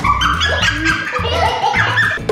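Background music with a steady low beat and a stepping melody over it.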